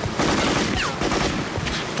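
Gunfire: a fusillade of automatic weapon fire that starts a moment in.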